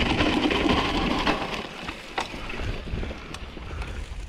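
Wind rushing over an action camera's microphone and mountain bike tyres rolling on a dry dirt trail, with a few sharp clicks and rattles from the bike. The rush is loudest at first and fades after about a second and a half.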